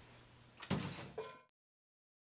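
Two knocks: a low thud about two-thirds of a second in, then a shorter knock a moment later, after which the sound cuts off abruptly to total silence.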